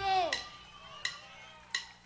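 A man's voice trails off. Then three sharp metallic ticks, evenly spaced about three-quarters of a second apart, count in the music.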